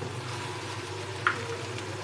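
Okra, onion and tomato masala frying in a nonstick wok, stirred with a wooden spatula: a steady soft sizzle with a low hum underneath.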